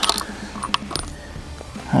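A few light metallic clicks and clacks from handling the Howa Super Lite bolt-action rifle after a shot: a quick cluster at the start and two more about a second in.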